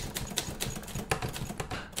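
Typewriter keys clacking in quick, irregular strokes, used as a sound effect.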